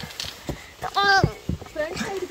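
A person's short wordless vocal sound with a falling pitch about a second in, among a few light knocks and scuffs of footsteps on the rock floor of a cave passage.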